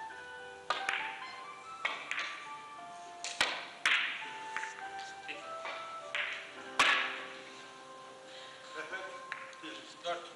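Carom billiard balls clicking: the cue strike and hard ball-on-ball knocks of a three-cushion shot, several sharp clicks over the first seven seconds, the loudest about seven seconds in. Music plays softly underneath.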